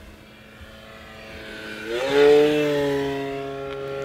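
E-flite Commander RC plane's electric motor and propeller passing close, sounding really rough. About two seconds in, its whine rises quickly in pitch and level, then holds its pitch and slowly fades.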